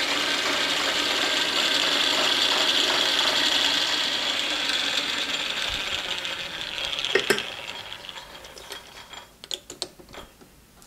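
Metal lathe running with its chuck spinning, a steady mechanical whir. The whir dies away over the last few seconds as the lathe winds down and stops, with a few sharp clicks and light ticks near the end.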